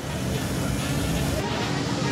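Cars driving past in busy street traffic, a steady wash of engine and road noise.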